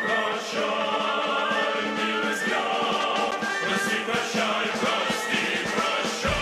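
Male choir singing a march together.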